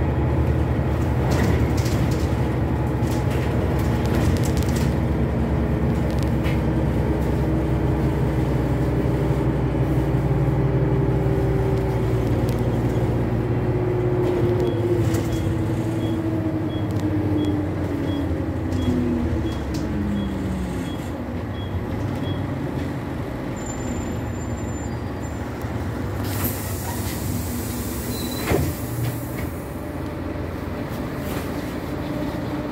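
Interior of a Renault Citybus 12M city bus on the move: a steady engine and drivetrain drone, with a whine that falls in pitch about halfway through as the bus slows. A row of faint, regular high beeps comes in the middle, and a hiss of air near the end, typical of the air brakes.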